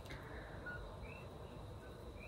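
Faint bird chirps, each a short rising note, about one a second, over a low background rumble.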